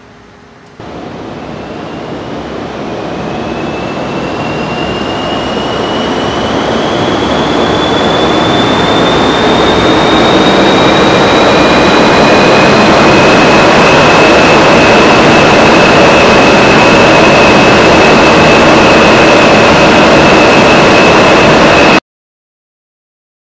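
Full-scale automotive wind tunnel running up to test speed: a rush of air starts suddenly about a second in and grows louder over about ten seconds, with a whine rising in pitch, then holds steady at speed.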